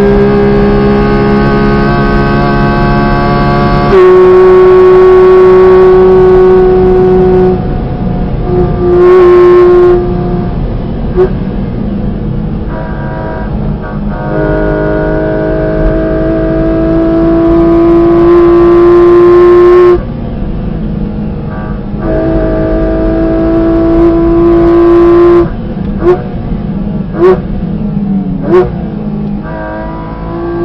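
Porsche Cayman GT4 RS's 4.0-litre naturally aspirated flat-six heard from inside the cabin at high revs, with a lift off the throttle about a third of the way in and another two-thirds of the way in. Between those it pulls through a gear, rising in pitch. Near the end come three or four short, sharp revs: throttle blips on downshifts as the car brakes for a slower corner.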